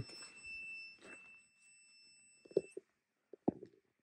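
A steady high electronic tone cuts off about two and a half seconds in. Then come a few short, faint knocks, which the investigator takes for footsteps.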